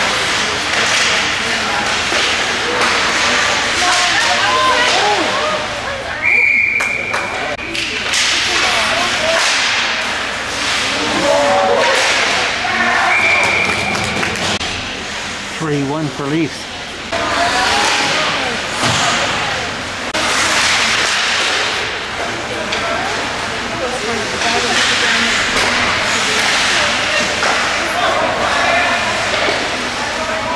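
Ice hockey play: skate blades scraping the ice and sticks and puck clacking, under spectators' voices, with two brief high steady tones about six and thirteen seconds in.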